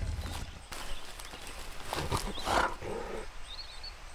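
Cartoon polar bear's short vocal grunts as he picks himself up off the ground, with faint bird chirps near the end.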